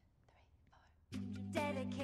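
A faint whisper for the first second, then just over a second in a woman's singing voice comes in loud, with a wavering held note over a steady low hum.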